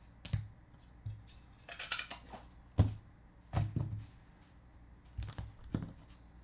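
Trading cards in hard plastic holders being handled and set down on a desk: about half a dozen short plastic clicks and knocks, the sharpest about three seconds in, with a brief rustle of cards around two seconds in.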